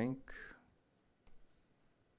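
A few faint clicks of typing on a laptop keyboard, after a spoken word trails off in the first half second.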